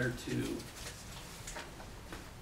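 A man's voice trails off in a drawn-out syllable in the first half-second. Quiet room follows, with faint paper rustling and handling clicks as documents are leafed through.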